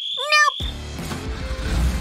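A brief high-pitched spoken "nope", then background music.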